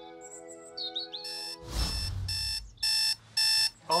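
A soft held musical chord with bird chirps, then from about a second in an electronic alarm clock beeping in repeated bursts, about two a second, as a sleeper is woken late.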